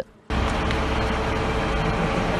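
Ford Cargo diesel truck engine idling in the street: steady engine noise with a faint steady hum, cutting in suddenly just after the start.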